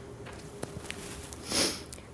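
A woman taking a quick, audible breath in through a close microphone about a second and a half in, just before she speaks again. A faint steady hum runs under the pause.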